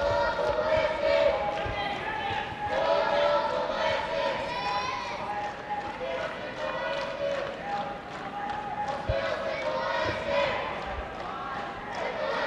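Arena crowd voices calling out in drawn-out shouts through the hall during a judo bout, with a few dull thuds of bare feet on the tatami.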